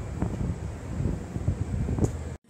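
Wind buffeting the camera's built-in microphone, an uneven low rumble that gusts up and down.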